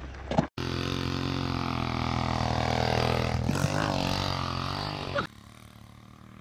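Small engine of a homemade motorized bicycle running steadily, its pitch wavering briefly about halfway through; it stops abruptly near the end.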